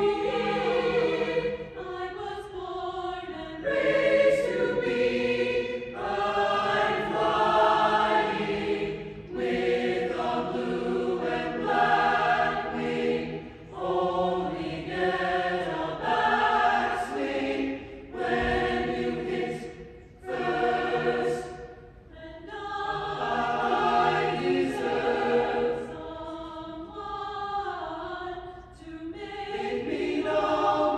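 A choir singing, in phrases of a few seconds each with short breaks between them.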